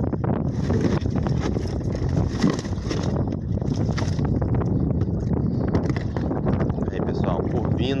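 Strong gusty wind buffeting the phone's microphone, a continuous low rumble, with indistinct voices underneath.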